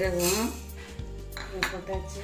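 Whole spices, fennel seeds among them, tipped from a small ceramic bowl into a dry non-stick kadai: seeds pattering onto the pan with a few sharp clinks of bowl against pan. Background music with singing runs for about the first half second and then stops.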